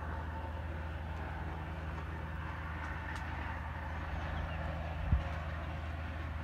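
A motorcycle engine running steadily at low speed along a rough dirt road, its low hum mixed with road and wind noise, with a single thump about five seconds in.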